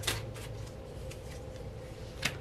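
Tarot cards being drawn and laid out by hand: a few soft, quiet rustles and taps of the cards, over a faint steady room hum.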